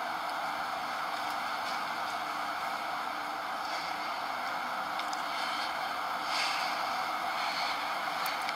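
Steady, even rushing hiss of wind-like film ambience, with no speech.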